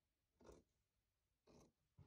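Scissors cutting through jersey fabric: two faint snips about a second apart.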